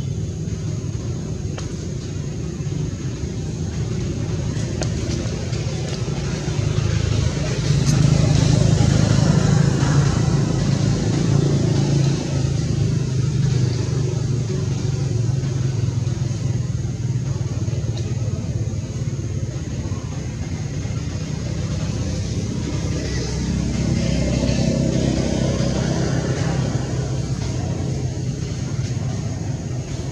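A steady low rumble that swells for a few seconds about a third of the way in and again later.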